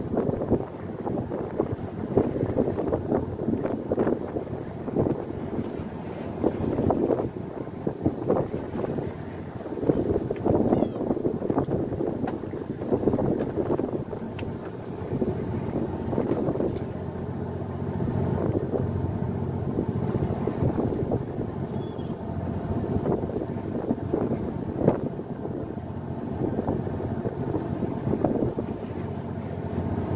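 Fishing boat's engine humming steadily under gusting wind on the microphone, with waves washing against the hull as the boat rocks.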